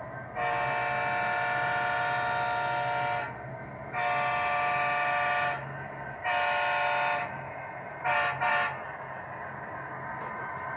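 Horn of a sound-equipped model Canadian Pacific diesel locomotive blowing a multi-note chime: a long blast, a second long blast, a shorter one, then two quick toots near the end. A steady low hum runs underneath.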